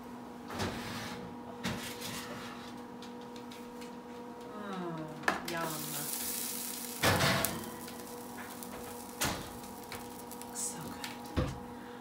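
Knocks and clicks of an oven door and a hot baking tray being handled, then a clatter about seven seconds in as the tray holding a rustic apple tart is set down on a wooden cutting board. A steady faint hum runs beneath.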